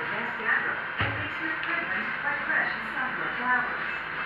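A television playing a programme with voices and music, with one dull thump about a second in.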